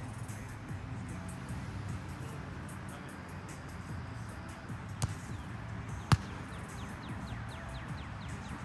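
Background music playing, with two sharp slaps of hands striking a volleyball during a rally about a second apart past halfway through, the second louder.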